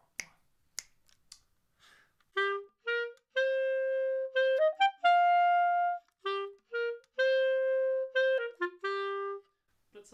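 A few finger snaps counting in the beat, then a clarinet playing a slowed-down phrase of a heavy rock study in cut time. It mixes short detached notes with longer held notes, with a quick rising run about halfway through.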